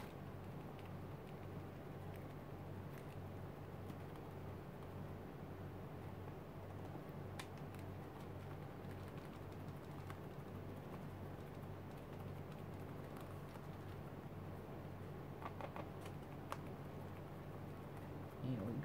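Faint, irregular soft tapping of a makeup sponge dabbing gesso through a plastic stencil onto paper, with a few small plastic clicks, over a steady low hum.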